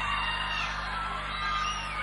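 Live cuarteto band music in a soft passage without singing: steady held chords over a low sustained bass.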